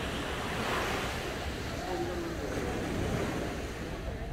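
Small waves washing up on a sandy beach: a steady, gently swelling rush of surf, with faint voices in the distance.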